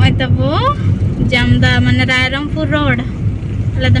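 Steady low rumble of a vehicle driving, heard from inside, with a person's voice over it in long held notes that glide up and down between them.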